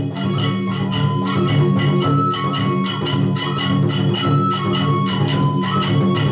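Kagura accompaniment: a bamboo flute holding and stepping between high notes over a fast, even beat of small hand cymbals and drum.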